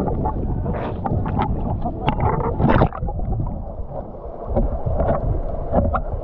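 Sea water splashing and sloshing around an action camera at the surface, with wind on the microphone; about three seconds in the camera goes under and the sound turns muffled underwater.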